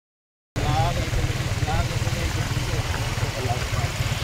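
Steady low rumble of a moving vehicle, heard from on board, with faint voices in the background. It starts about half a second in.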